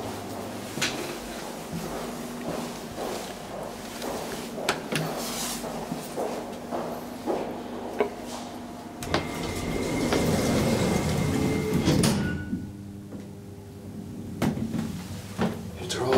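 Deve Schindler elevator running between floors: a steady hum and faint whine with scattered sharp clicks. The rumble grows louder for a few seconds, then drops away suddenly about twelve seconds in as the car stops.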